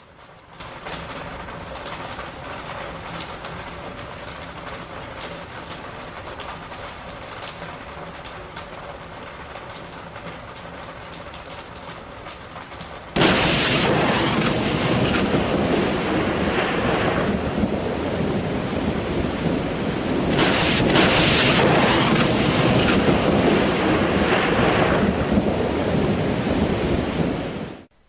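Steady rain, then a sudden loud burst of thunder about halfway through that runs on as heavy rumbling storm noise. It swells again a few seconds later and cuts off abruptly at the end.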